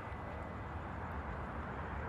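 Faint steady outdoor background noise with a low hum underneath and no distinct events.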